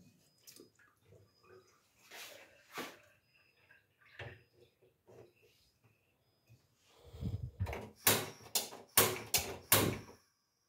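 A metal pot knocking onto a gas stove's burner grate, then a quick run of about five sharp clicks from the Nunix stove's spark igniter as the knob is turned to light the burner, in the last two seconds.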